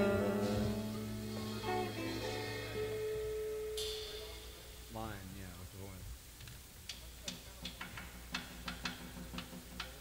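A rock band's electric guitars and bass ring out on a final chord that fades away over about three seconds. A brief voice follows, then a run of sharp clicks and taps of studio handling.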